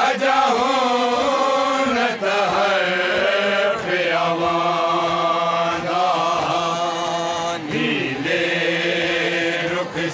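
A group of men chanting a noha, a Shia lament, together without instruments, holding long, slowly bending notes.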